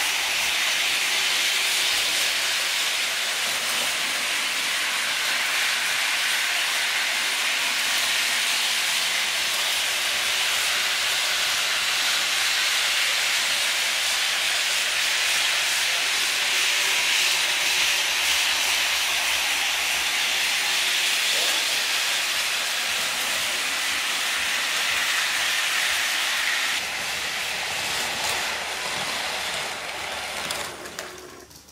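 Märklin HO model trains running on metal three-rail track: a steady hiss of motors and wheels, easing a little near the end.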